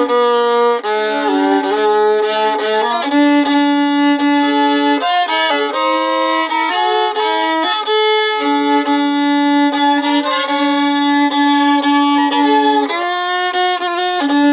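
Solo fiddle bowing a slow melody, with some notes held for several seconds and a second string sounding beneath the tune at times.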